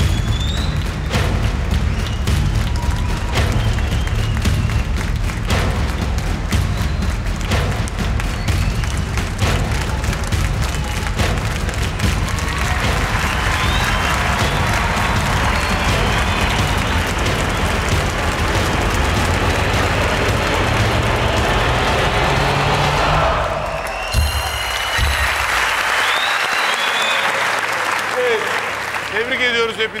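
Game-show vote-reveal music with a steady low beat, joined by applause and cheering about halfway through as the score climbs. The music cuts off suddenly about 24 seconds in, and the clapping and cheering carry on, fading out near the end.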